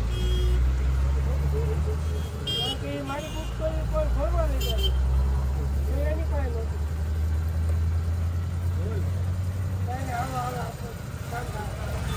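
A steady low rumble of a running engine or motor drops away about ten seconds in, with people talking in the background.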